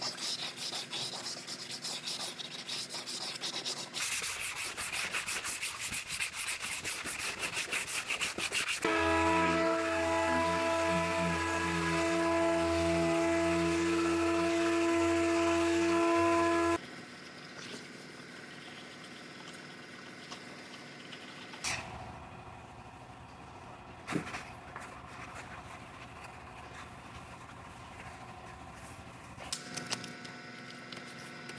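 Body filler being hand-sanded with a sanding block: quick rubbing strokes, getting faster and denser after a few seconds. Then a dual-action sander runs steadily with a whine for about eight seconds and stops abruptly. Quieter rubbing follows, with a couple of sharp knocks.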